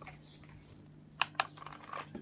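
Handheld UV/LED nail lamp being handled over a silicone resin mold: two sharp plastic clicks in quick succession about a second in, over a faint steady hum.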